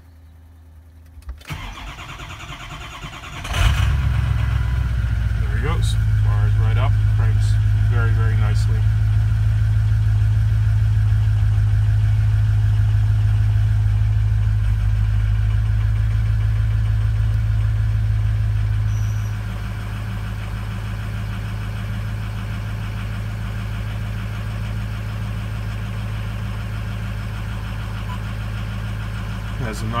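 Ford 6.0 liter Power Stroke turbo-diesel V8 heard from inside the cab, starting up about three and a half seconds in and running at a fast idle with a steady low drone. About nineteen seconds in the idle drops and settles lower and quieter.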